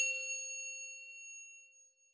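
A single bright metallic ding, like a chime or bell struck once, ringing out and fading away over about two seconds: the sound effect of an animated title logo.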